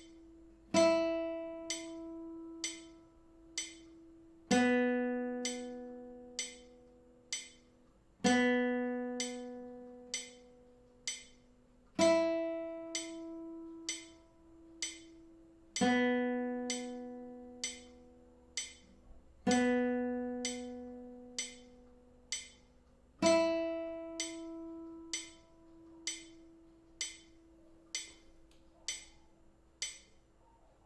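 Classical guitar playing single open-string semibreves, one struck every four beats and left to ring: the high E and B strings in the order E, B, B, E, B, B, E. A short click ticks on each beat, about once a second, and carries on alone for several beats after the last note.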